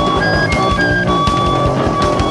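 Live punk rock band playing a passage without vocals: rapid drumming under electric guitar holding high sustained notes.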